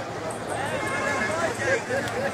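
Crowd of onlookers talking and calling out over one another; from about half a second in, a voice rises and falls in a wavering cry, loudest near the end.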